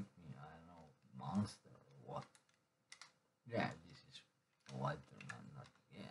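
A man's voice in short, indistinct phrases and murmurs, with a few sharp clicks between them.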